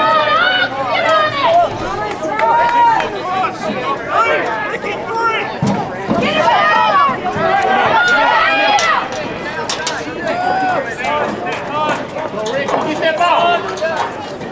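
Spectators' voices: people talking and calling out, with several voices overlapping.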